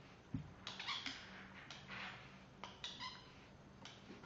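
Faint handling noise from hands working screws, washers and bearings into a printed plastic 3D-printer idler bracket: a dull thump about a third of a second in, then short scrapes and rustles, and a brief high squeak about three seconds in.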